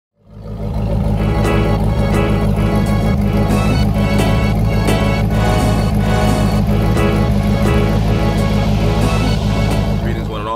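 Music with a steady beat over a C4 Corvette's V8 exhaust running steadily.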